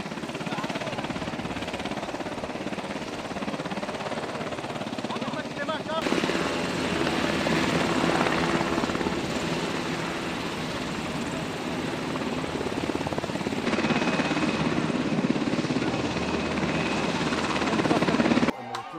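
Israeli Air Force UH-60 Black Hawk helicopter running close by, a loud steady rush of rotor and turbine with a rapid rotor beat. It gets louder about six seconds in and again near the end.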